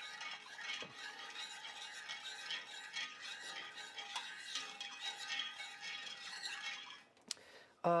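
A metal spoon stirring heavy cream into a pan sauce in an enamelled pot, with an irregular liquid swishing and the spoon scraping lightly against the pot. The stirring dies away about a second before the end, with a single click.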